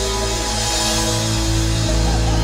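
A live band with a string section, drum kit, guitars and keyboard playing music. It holds long sustained notes over a heavy, steady bass.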